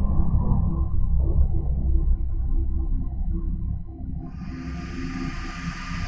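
Sound of a soccer ball striking a man's face, slowed right down into a deep, drawn-out low sound that fades away over about four seconds, followed by a faint steady hiss.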